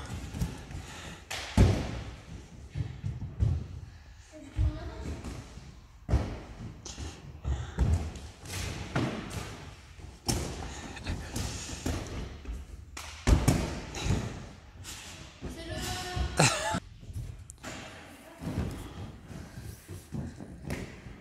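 Repeated thuds of a person running, jumping and landing on foam gym mats and padded vaulting blocks, mixed with footfalls on a wooden sports-hall floor, echoing in the large hall. The thuds are irregular, with the heaviest about a second and a half in and again about thirteen seconds in.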